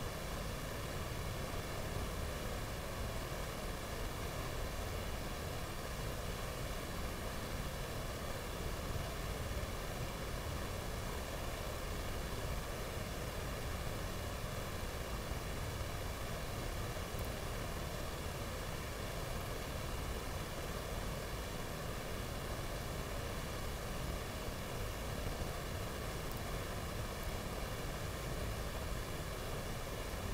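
Steady hiss with a low rumble underneath, unchanging throughout; no voices or ball strikes stand out.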